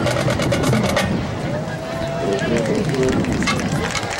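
High-school marching band drum line finishing its percussion feature, with rapid drum and block strikes that stop about a second in. Voices from the crowd follow, along with a few short pitched notes as the band readies the next tune.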